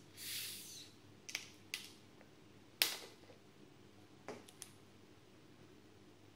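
Crown cap prised off a bottle of homebrewed pale ale, with a short hiss of escaping carbonation, followed by a few sharp clicks and knocks, the loudest about three seconds in.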